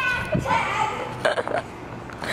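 Children's wordless vocal noises during a game of tag, opening with a short high-pitched squeal.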